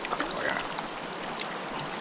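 Steady rush of a small mountain creek's water flowing over a rocky bed, with a few faint clicks.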